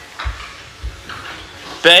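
Two soft, low thuds about half a second apart with faint room noise, then a voice calling 'Babe?' near the end.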